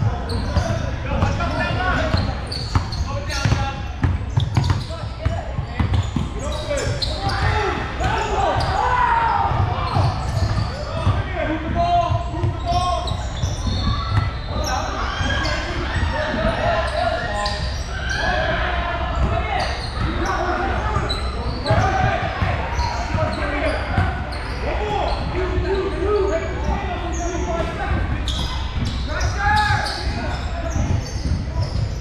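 Game sounds on an indoor basketball court: a basketball bouncing repeatedly on the hardwood, over near-continuous voices of players and spectators, with the echo of a large gym.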